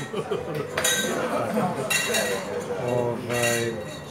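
Restaurant dining-room bustle: cutlery and dishes clinking, with a few sharp clatters and voices talking in the background.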